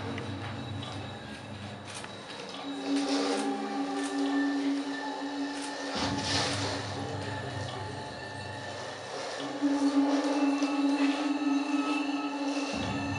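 Soundtrack music: a held low tone and a deep drone that take turns, switching abruptly about six seconds in, under scattered higher textures.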